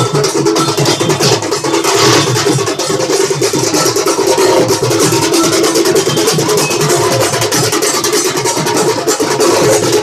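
Several dhol drums beaten in a fast, continuous rhythm, with dense overlapping strokes.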